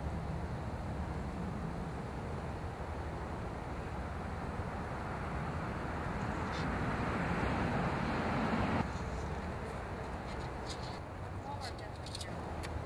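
Steady outdoor background noise, a rushing haze that swells about six seconds in and drops off suddenly near nine seconds.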